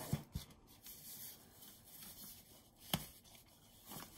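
Hands gripping and twisting a plastic paintbrush tube to work its cap open: faint rubbing of plastic with a couple of small clicks near the start and a sharper click about three seconds in.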